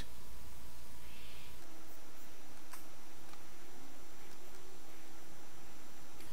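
Quiet room tone: a steady background hiss and faint hum, with one faint click about halfway through.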